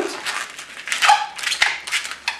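Long latex modelling balloon squeaking and rubbing as it is twisted by hand, a quick run of squeaks and crackly rubs.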